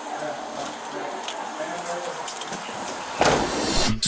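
Faint, indistinct voices with a few small clicks and knocks, then a loud rushing noise for the last second or so that cuts off abruptly.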